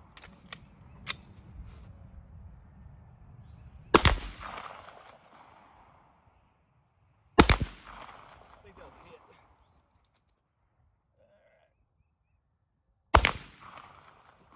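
Three single gunshots, the first about four seconds in, the second about three and a half seconds later and the last near the end, each a sharp crack followed by an echo that dies away over a second or so. Two faint clicks come about half a second and a second in.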